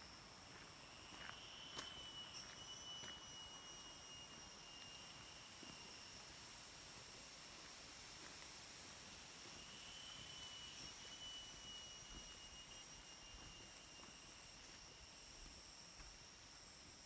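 Jungle insects calling in a high, steady whine. It swells up about two seconds in and again about ten seconds in, each time fading after a few seconds.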